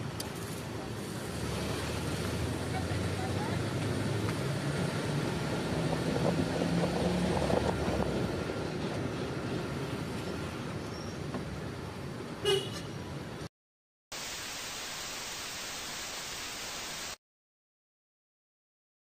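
Steady road and vehicle noise, with a short horn toot about twelve and a half seconds in. The sound then cuts out, gives way to about three seconds of flat, even hiss, and stops dead.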